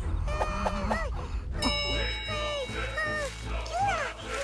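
High-pitched cartoon character voices squealing and chattering without words over background music.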